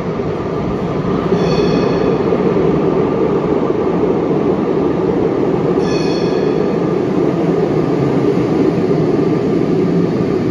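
Porto Metro light rail train approaching through the tunnel and running into the underground station: a loud, steady rumble of wheels on rail that builds over the first second or so. Two brief high-pitched tones cut through it, about a second in and again about six seconds in.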